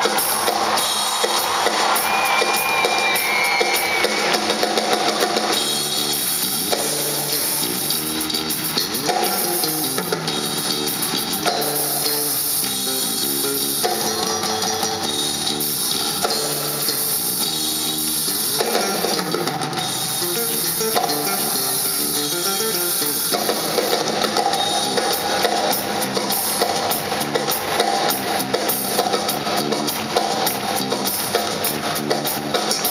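Live rock band: an electric guitar playing lead over a drum kit and bass, recorded from the arena audience.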